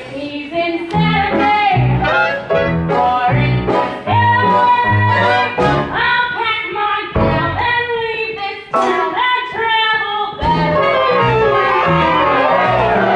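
Pit orchestra playing a brisk musical-theatre number, clarinets among the reeds, over a regular bass beat.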